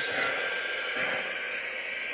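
Steady running noise of an O-gauge K-Line passenger train rolling slowly on three-rail track: a continuous even rumble with no distinct beats.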